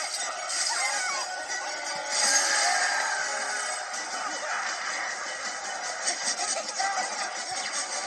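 Soundtracks of several video clips playing at once through a computer's speakers, heard as a dense jumble of music and cartoon-like noises. The sound is thin, with almost no bass.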